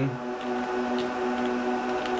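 IBM/Lenovo System x3650 M4 rack server running, its cooling fans giving a steady hum and whine made of several constant tones.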